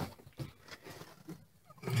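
A click as the Dometic RV refrigerator's door latch is released, then a few faint knocks and rustles as the door is opened.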